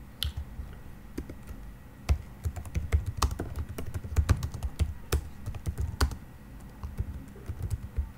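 Typing on a computer keyboard: a few scattered keystrokes at first, a quick, dense run of keys from about two seconds in to about six, then a few more near the end.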